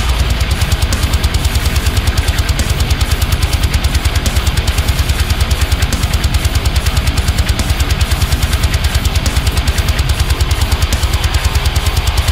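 Heavy metal mix of a high-gain, low-tuned eight-string electric guitar through a Neural DSP amp-simulator plugin, over drums, with a fast, even pulse of about ten low hits a second.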